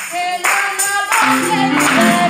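A girl singing a gospel song into a microphone, amplified through a PA, with hand-clapping and a tambourine striking the beat about every half second.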